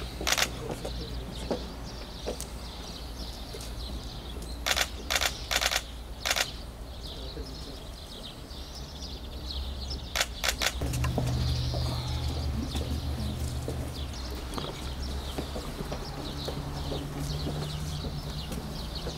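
Camera shutters clicking in short runs: a single shot at the start, a quick run of about four around five to six seconds in, and two or three more around ten seconds in. Birds chirp in the background, and a low steady hum comes in about eleven seconds in.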